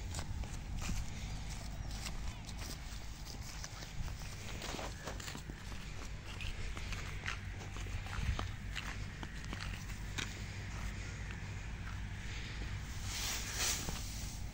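Footsteps in sandals over dry stubble and loose straw, irregular, with the rustle of a straw bundle being carried.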